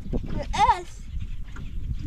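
One short, high-pitched cheer from a person about half a second in, over a steady low rumble of wind on the microphone.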